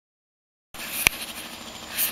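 Silence, then from under a second in a steady background noise, with one sharp click or knock a moment later.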